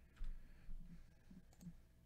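Faint clicking of a computer mouse and keyboard keys in two short clusters, the first and loudest just after the start, the second about a second and a half in.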